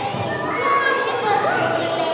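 A group of children calling out together, several high voices overlapping with no instruments playing.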